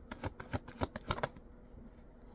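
A tarot deck being shuffled by hand: a quick run of irregular card snaps and flicks that stops a little over a second in.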